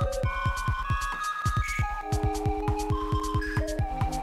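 Live-coded electronic music from TidalCycles: a fast, even pulse of low drum hits, about seven a second, under high ticking percussion and held synth notes in a pelog scale. About halfway through, a two-note chord comes in and holds.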